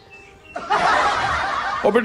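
A burst of laughter starts about half a second in and lasts a little over a second.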